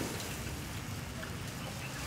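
Steady hissing outdoor background noise with a low rumble underneath and a few faint, short high tones.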